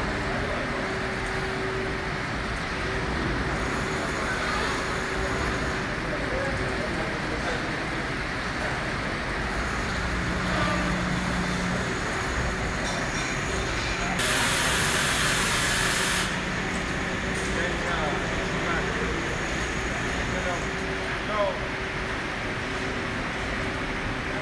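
Factory-floor machinery from robotic battery assembly lines: a steady hum with a constant drone. A loud hiss cuts in a little past the middle and lasts about two seconds.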